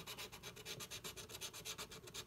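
Scratch-off lottery ticket being scratched, a faint, rapid back-and-forth scraping of about ten strokes a second as the coating is rubbed off the play spots.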